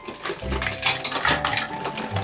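Plastic toy dishes and play food clattering and clicking together as toddlers pick up and set down the pieces, a quick irregular run of knocks, over background music.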